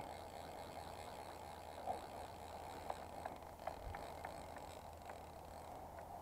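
Faint steady rush of flowing river water, with a few light ticks scattered through it.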